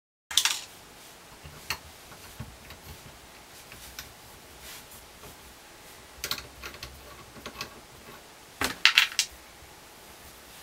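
Brass gas pipe fittings clinking and clicking against each other and the black iron pipe as they are handled and screwed on by hand, in scattered sharp ticks with a louder rattle of metal just after the start and again a second before the end.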